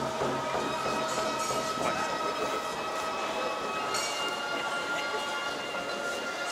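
Held wind-instrument notes of traditional ceremonial music accompanying a shrine procession, sustained steadily over the murmur of a large crowd.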